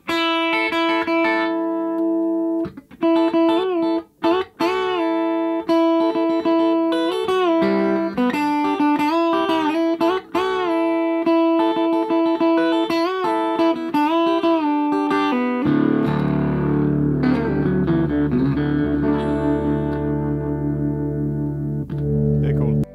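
Electric guitar, a blonde Fender Telecaster fitted with a Hipshot B-bender, played through an amplifier: held notes bent up in pitch and let back down again and again, typical of B-bender playing. About 15 seconds in it moves to lower, fuller chords.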